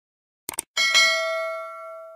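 Subscribe-button animation sound effect: a quick mouse click, then a notification-bell chime that rings out and fades over about a second and a half.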